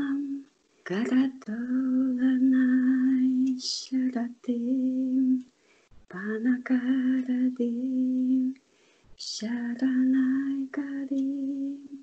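A woman singing solo, holding long, steady notes in slow phrases of two to three seconds each. Two quick breaths are audible between phrases, about four and nine seconds in.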